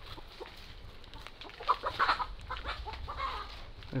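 Chickens clucking, with a few short calls about halfway through and again near the end, over faint footsteps on dry leaf litter.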